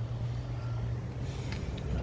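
A vehicle engine idling: a steady low hum with no other distinct events.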